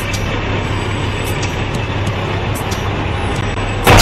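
Steady city street traffic noise, a low engine rumble under an even hiss. Near the end a sudden, very loud, distorted burst cuts in: a drawn-out "wow" of amazement.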